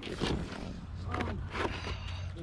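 Cardboard and plastic toy packaging being handled, boxes rustling and bumping as they are picked up and moved, over a steady low hum.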